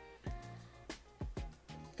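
Soft background music with steady held notes, and a few sharp clicks as a card is worked out of a rigid plastic top loader.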